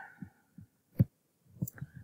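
A single sharp computer mouse click about a second in, among a few soft low thumps.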